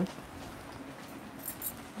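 Soft rustling of saree fabric being handled and refolded, with two brief, sharper swishes about a second and a half in.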